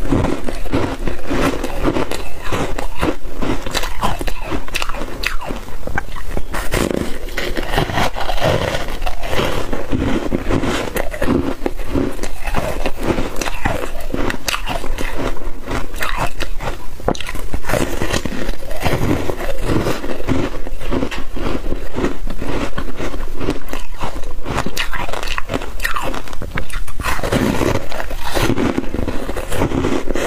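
Frozen foam ice being bitten and chewed right at a clip-on microphone: a dense, continuous run of sharp crunches and crackles, several a second, as the frozen foam breaks between the teeth.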